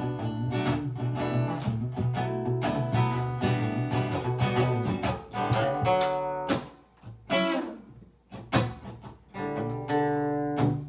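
Acoustic-electric guitar strummed: dense, continuous strumming over a sustained low note for about six seconds, then the playing thins to single strummed chords left to ring, with short pauses between them.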